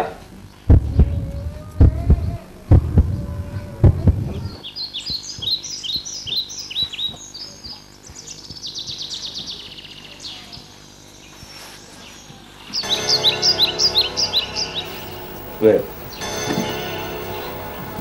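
Several dull low thumps in the first few seconds, then birds chirping in repeated runs of high calls.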